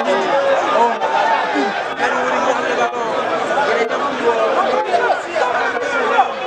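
Football crowd chattering and calling out, many voices overlapping without a break.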